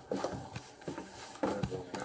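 Footsteps on wooden porch boards: a series of short knocks, roughly two or three a second, with a man's voice near the end.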